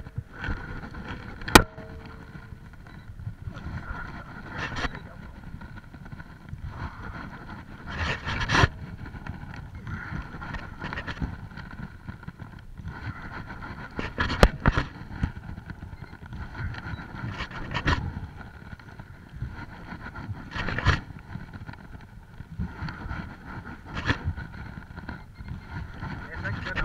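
Choppy water slapping against the hull of a small fishing boat, with irregular sharp knocks every few seconds.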